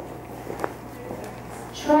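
Dance shoes stepping on a wooden parquet floor, with one sharp tap a little over half a second in.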